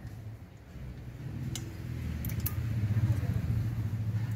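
A few light metallic clicks from a screwdriver and ring spanner working a diesel engine's rocker arm adjusting screw and lock nut. Under them runs a low rumble that grows louder through the middle.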